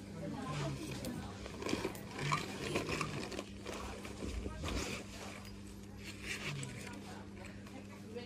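Indistinct voices talking quietly in the background, over a steady low electrical hum.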